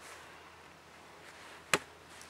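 One sharp chop of a blade into a log near the end, cutting a notch into the wood.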